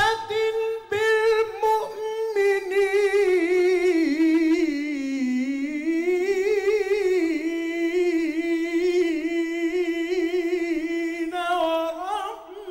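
A man singing an unaccompanied Islamic devotional chant into a microphone, drawing out long melismatic notes with a wide, steady vibrato. The line sinks lower about five seconds in and climbs back up, with short breaths near the start and just before the end.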